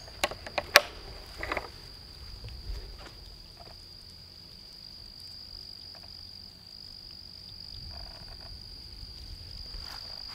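A steady, high-pitched unbroken drone of night-singing insects, one even tone that holds throughout. A few sharp clicks sound in the first second.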